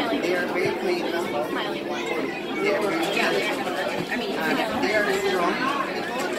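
Babble of many people talking at once in a crowded room, a steady chatter with no single voice standing out.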